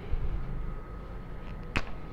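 A low thump just after the start, then a single sharp click near the end as a marker tip strikes the whiteboard to begin writing.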